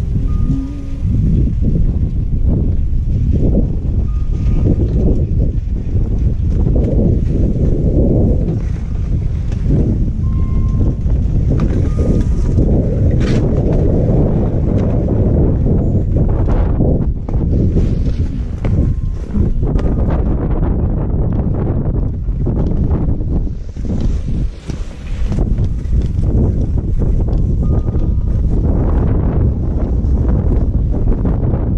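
Wind buffeting a GoPro action camera's microphone: a loud, continuous low rumble that swells and eases in gusts, with a brief lull about three quarters of the way through.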